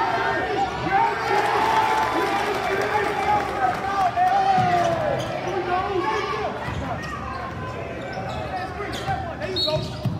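Spectators and players shouting and yelling in a gym during basketball play, with a few thuds of a basketball bouncing on the hardwood floor.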